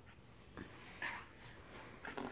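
A crawling baby's faint breathing and soft breathy grunts, with one short, louder grunt about a second in.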